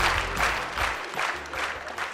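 Audience applause, a dense patter of many hands clapping that dies away.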